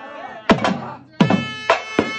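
Two-headed barrel drum played by hand in an uneven dance rhythm: sharp strokes, each with a deep tone that drops in pitch. About halfway through, a held melodic note with many overtones joins the drumming.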